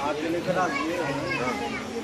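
Several people talking at once, children's voices among them.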